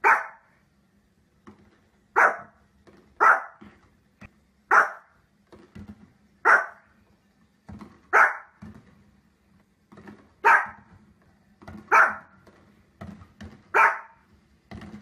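A small fluffy puppy barking: single sharp barks repeated about nine times, one every one to two seconds.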